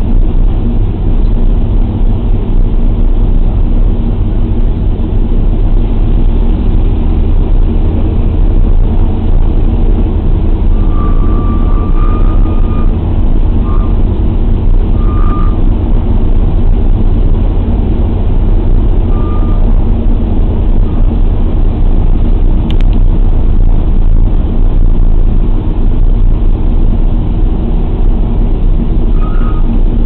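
The four radial engines of a B-24 Liberator bomber, Pratt & Whitney R-1830 Twin Wasps, make a loud, steady, deep drone heard from inside the rear fuselage with the waist windows open.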